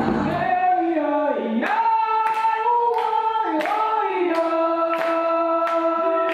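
A group of voices sings long held notes in two or three-part harmony, with slides between the notes. The instruments drop out about half a second in, leaving the voices unaccompanied. From under two seconds in, hands clap about twice a second.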